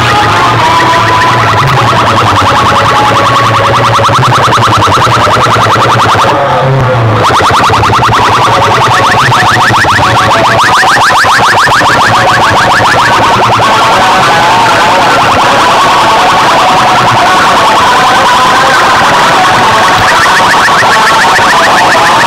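Very loud, distorted dance music blasting from a tall stack of horn loudspeakers (a DJ sound box), with a heavy bass line. About seven seconds in, the bass drops away and a fast, rapidly repeating electronic effect takes over for several seconds.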